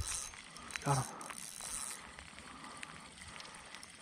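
Spinning reel being cranked to retrieve a hooked trout: a light steady whir that stops about halfway through, followed by a few faint clicks.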